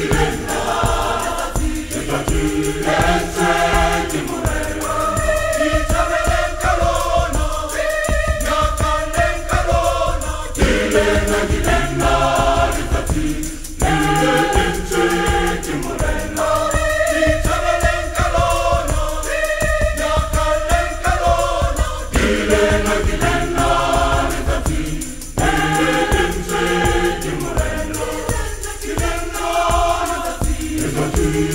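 A large mixed choir of men and women singing a gospel song in harmony, in phrases with short breaths between them.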